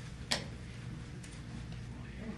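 Quiet room with a steady low hum, broken once by a single short, sharp click about a third of a second in.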